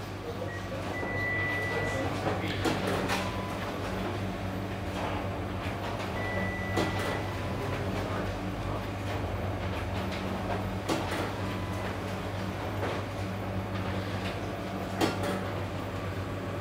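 Espresso Book Machine running as printed sheets are fed into the book block: a steady low hum with scattered clicks and knocks, and two brief high whines, one about a second in and one about six seconds in.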